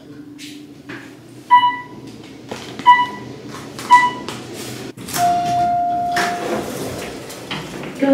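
Hotel elevator chime dinging three times, short and sharp, about a second or more apart, followed by a single longer steady tone as the elevator doors slide open.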